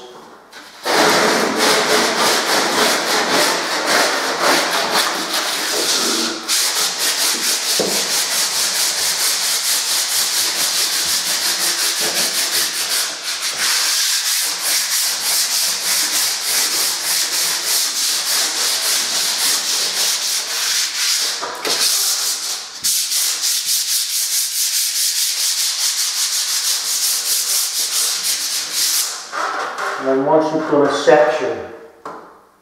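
Hand sanding a bare plaster wall, stripped of its wallpaper, with a folded sheet of sandpaper: rapid back-and-forth strokes starting about a second in. The strokes stop briefly a few times.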